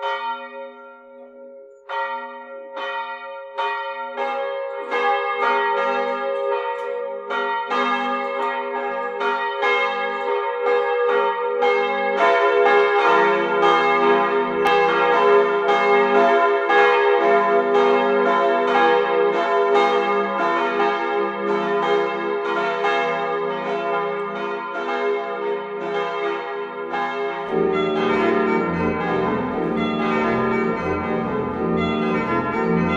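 Church bells ringing, starting with single strikes about twice a second, then more bells joining until they ring densely together. A deeper sound comes in near the end.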